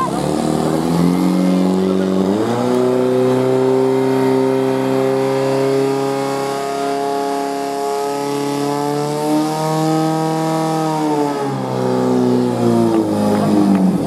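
Portable fire pump's engine running at full revs, driving water out to two hose lines. It revs up sharply about two and a half seconds in, holds a high, steady pitch, and drops back to a lower speed a few seconds before the end.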